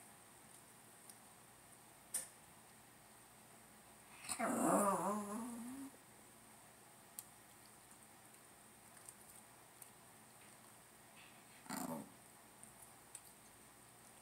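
Shih Tzu giving one wavering growling whine about four seconds in, lasting under two seconds and dropping in pitch as it goes, then a short, softer huff near the end.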